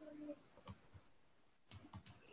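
Faint computer mouse clicks: one about two-thirds of a second in, then three in quick succession near the end.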